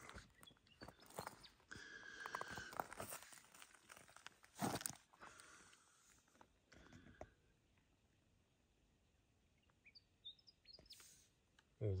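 Footsteps crunching on loose, broken rock fragments, an irregular series of crunches with one louder step just before the halfway point, fading to near silence after about seven seconds.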